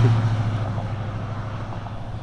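A road vehicle going by and moving away, its steady low hum and road noise slowly fading.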